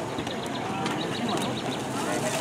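Branches and palm fronds dragged and scraped across the asphalt, giving a run of light clicks and scrapes in the first half, over the murmur of a crowd's voices.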